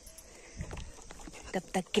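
Quiet outdoor background with a brief low rumble and a few faint ticks, then a woman begins speaking near the end.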